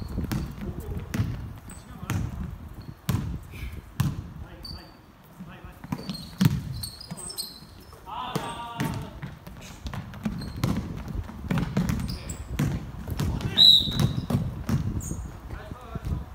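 Basketball bouncing on a wooden gym floor and basketball shoes squeaking on the court during play, with a loud squeak near the end. A player's voice calls out about eight seconds in.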